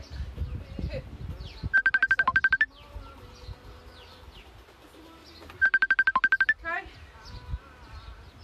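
A phone ringtone: rapid electronic beeping on one pitch, about ten pulses a second, ending in a quick rising trill, sounding twice about four seconds apart. Birds chirp faintly in the background.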